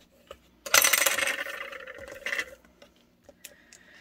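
A bone folder rubbed firmly over a clear plastic flip-flap photo sleeve, a scratchy scraping rub lasting about two seconds starting near the first second, pressing the dot glue underneath flat to secure it. A few faint clicks of handling follow.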